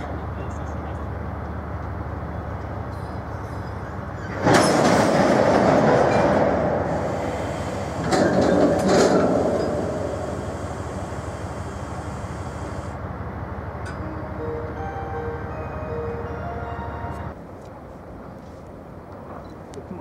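Freight train of tank wagons rolling slowly through a station over a steady low rumble, with two loud rushing bursts of noise about four and eight seconds in. The sound drops away suddenly near the end.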